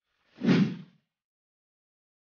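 A single short whoosh sound effect of an intro transition, about half a second in, with a heavy low body under a hiss.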